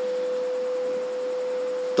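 A single steady, pure tone held without change, like a tuning fork: the ring of public-address microphone feedback.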